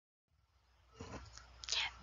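Dead silence for the first second, then a faint whispered voice in the second half.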